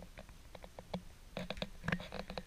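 Small clicks and taps of a charging cable's plug being pushed into a smartphone and the phone and leads being handled, with a quick cluster of clicks about a second and a half in.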